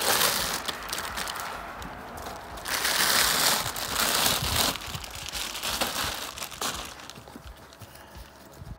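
Clear plastic bag crinkling and rustling as hands open it and pull out a folded fabric car cover. It is loudest from about three seconds in and quietens toward the end.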